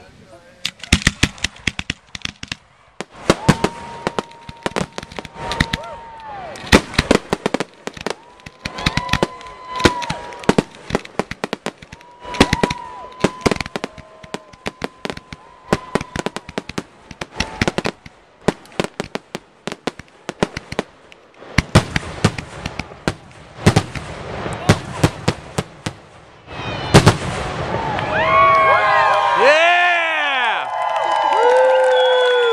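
Aerial fireworks going off in a rapid string of sharp bangs and crackles, with a few long, steady whistles between the bursts. Near the end a crowd starts cheering and whooping over the last bursts.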